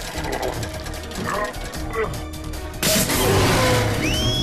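Cartoon action soundtrack: background music with sound effects, and a sudden loud burst of noise about three seconds in.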